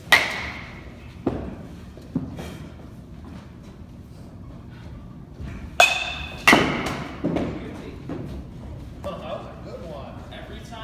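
Baseball bat hitting pitched balls in an indoor batting cage: a sharp, ringing crack right at the start and two more close together about six seconds in, each followed by softer thuds, with echo from the large hall.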